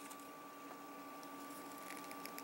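Quiet room tone with a faint steady hum, and a few faint plastic ticks near the end as an action figure's swappable hand is worked onto its wrist peg.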